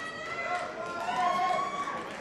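An audience singing an anthem together without any instrumental accompaniment, in long held notes.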